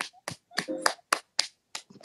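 A regular run of sharp hand slaps, about four a second, with a brief voice sound about a third of the way in.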